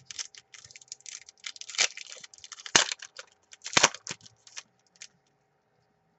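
Trading cards and their foil pack wrapper being handled: a fast run of crinkly crackles and clicks for about five seconds, with three louder snaps about a second apart.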